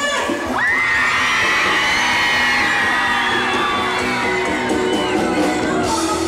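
Live pop-rock band music in a break where the bass and drums drop out: a long high note slides up about half a second in, is held, then wavers and slowly falls, with the crowd cheering and whooping underneath.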